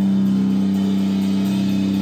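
Amplified electric guitars sustaining a low droning note through the amps, held steady and unchanging with no drums.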